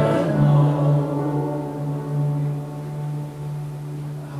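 Electronic keyboard holding a sustained chord at the end of a worship song: a steady low note with several tones above it, slowly fading.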